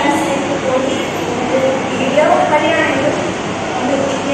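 A woman talking over a steady, even background noise.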